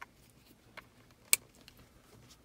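Cable plug being pushed into the connector socket of a handheld Matco MD56 TPMS tool: a few faint clicks, then one sharp click about a second and a third in.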